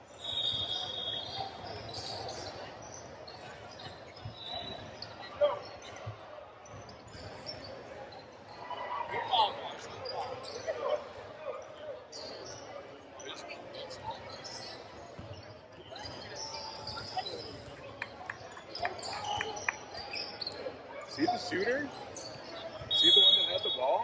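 Indoor gym during a basketball game: a referee's whistle blows short and shrill just after the start and again near the end, the loudest sound. Between the whistles a basketball bounces and players and spectators talk, echoing in the hall.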